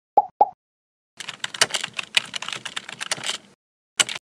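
Sound effects: two short pops, then about two seconds of rapid computer-keyboard typing clicks, then a single sharp click at the end.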